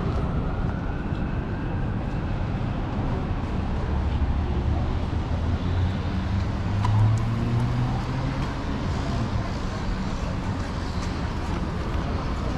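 City street traffic: a steady low rumble of vehicles, with one engine's hum swelling in the middle and loudest about seven seconds in.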